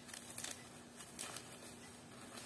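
Faint handling of a package: a few soft, brief rustles and clicks as it is opened, over a faint steady low hum.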